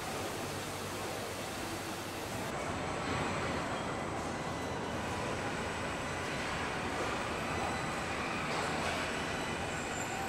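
Steady machinery noise of a car body-assembly line, an even industrial din with faint steady whines. Its character changes about two and a half seconds in, turning slightly louder and less hissy.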